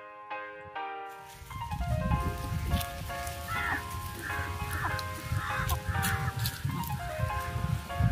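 Background music with steady keyboard-like notes. Over it, from about a second in, a low outdoor rumble. Near the middle comes a run of about five short calls from chickens, each falling slightly in pitch.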